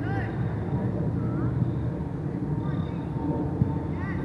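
Wind buffeting the microphone in a continuous low rumble, with a few distant voices calling out in short rise-and-fall shouts, and one sharp thump near the end.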